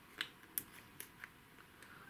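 Four or five faint, sharp clicks as a small screwdriver tip works the spring of a 7.62 AK muzzle device into its seat.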